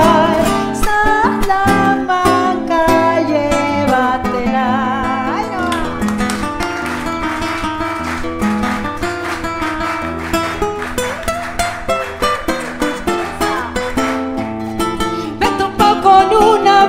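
Acoustic guitar playing an instrumental passage of a chacarera doble, in a quick rhythm of strummed strokes and plucked melody.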